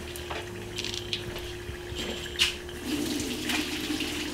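Water pouring into a kitchen sink as a pot of cooked rice noodles is drained into a colander, with a few knocks of cookware over a steady low hum.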